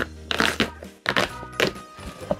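Cardboard shipping box being torn and pulled open: flaps ripping and scraping in a few quick bursts, over background music.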